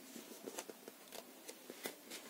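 Faint rustling and several light ticks of paper as a hand handles the pages of a softcover workbook.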